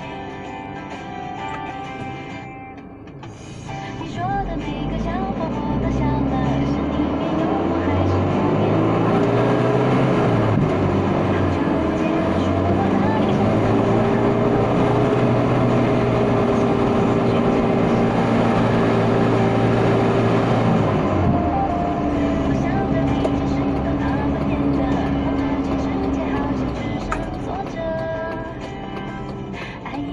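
Vehicle engine pulling away and speeding up: its pitch rises for several seconds, holds steady, drops once about two-thirds of the way through as with a gear change, then fades near the end. Music from the car radio plays underneath.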